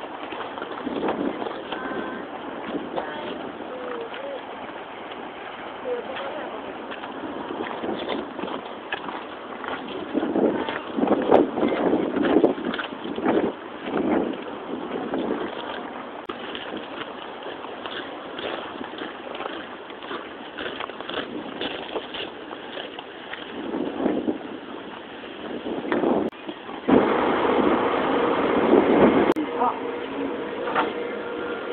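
Indistinct, muffled voices of people talking, with rough wind noise on the microphone. Near the end the sound changes abruptly to denser indoor background chatter.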